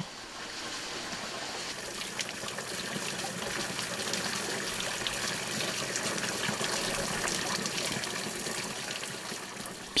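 Water pouring onto a waterwheel and splashing down into the stream below, a steady rush of water.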